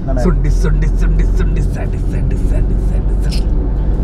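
Steady low rumble of a car on the move, heard from inside the cabin, with brief snatches of talk over it.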